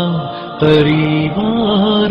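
A solo male voice singing an Urdu naat (a devotional song praising the Prophet Muhammad), drawing out long held notes. There is a short dip in loudness just after the start before the next long note begins.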